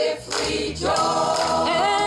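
A mixed choir singing together, short broken phrases at first, then settling into long held chords about a second in.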